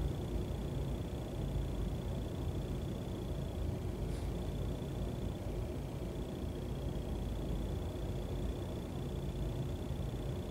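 Room tone: a steady low rumble with a faint, thin, steady high whine above it.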